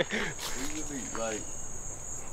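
Insects droning steadily, a high even buzz, with a person's low voice and a short laugh about a second in.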